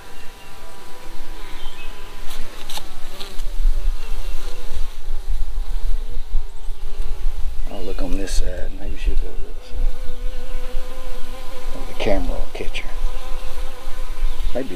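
Honey bees buzzing steadily around an opened nucleus hive, a dense hum of the colony. Twice a louder buzz rises and falls in pitch over it.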